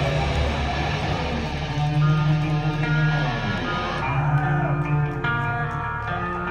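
Live rock band's electric guitars and bass holding long ringing chords that change every second or two, with no drum hits.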